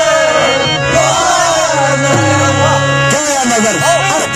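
Live qawwali-style music: a man singing with ornamented, gliding phrases over the held reed chords of a harmonium.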